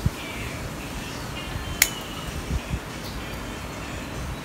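Scissors snipping twigs off a ficus bonsai: a sharp snip at the start and a louder one a little under two seconds in, with a few soft knocks after.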